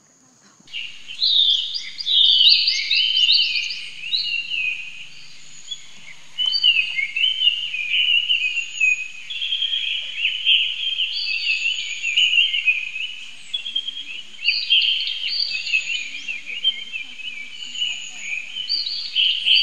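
Birds chirping busily, many short overlapping calls starting just under a second in, over a steady high whine.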